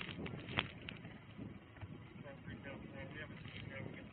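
Faint, indistinct voices in the background over a low rumble, with a few sharp clicks in the first second, the loudest about half a second in.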